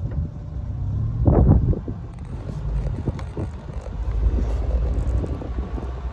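An open-top car driving slowly on a gravel dirt track: a steady low rumble of wind on the microphone, engine and tyres, with small scattered clicks from the gravel and a louder burst about a second in.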